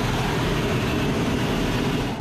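Steady jet noise heard from inside the cockpit of a Red Arrows BAE Hawk in flight: engine rumble mixed with the rush of air over the canopy, unchanging throughout.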